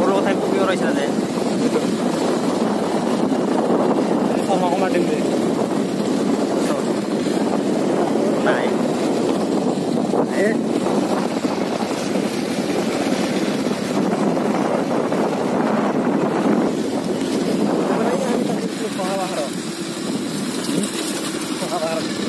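Motorcycle engine running steadily while riding, mixed with road and wind noise.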